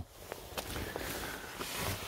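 Quiet rustling with a few faint clicks: handling noise as someone moves about in the car.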